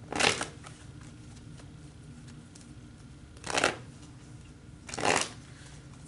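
A tarot deck being shuffled in the hands: three brief bursts of card shuffling, one at the start and two close together in the second half.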